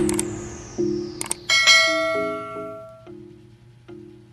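Background music with a subscribe-button sound effect laid over it: a falling swish, a couple of clicks, then a bell chiming once and ringing out for about a second and a half.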